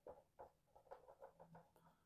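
Very faint squeaks and scratches of a dry-erase marker writing on a whiteboard, a quick run of short strokes barely above room tone.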